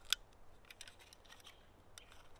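Small mechanical clicks and ticks of a 120 film roll and a medium format film-back insert being handled and fitted into the film magazine. One sharp click comes just after the start, then a few lighter ticks.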